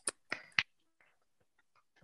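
A few short, sharp clicks in quick succession within the first second.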